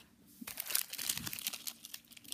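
Plastic wrapper of a Lotus Biscoff cookie two-pack crinkling in the hands as it is handled, starting about half a second in.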